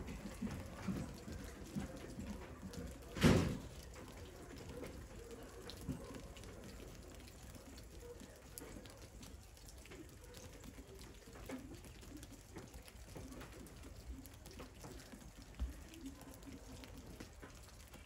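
Faint outdoor ambience of wet snow falling in woods, with soft irregular ticks and drips. A brief loud rush of noise comes about three seconds in.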